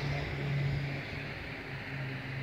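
A steady low engine hum with outdoor background noise, dipping slightly in level midway.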